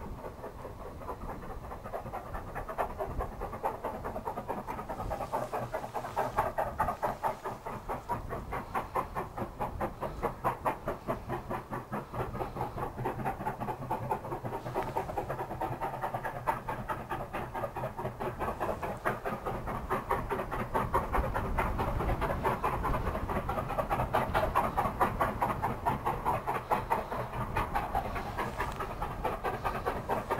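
A China Railways QJ-class 2-10-2 steam locomotive working hard, its exhaust beating in a rapid, even rhythm. The beats grow steadily louder as it approaches.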